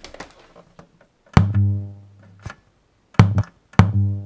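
Vintage Soviet toy synthesizer playing a few low notes, each starting with a sharp click and dying away quickly, like a kick drum. The loudest and longest comes about a second and a half in, and two shorter ones come near the end.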